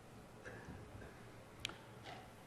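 Faint room tone with a single short, sharp click about one and a half seconds in, as the presentation slide is advanced.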